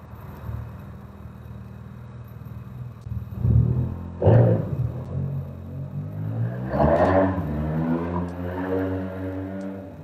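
A motor vehicle's engine passing over a low steady hum. It swells about four seconds in, and its note slides slowly downward in the second half.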